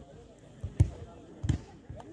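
Two dull thumps, about two-thirds of a second apart, over a faint murmur of voices.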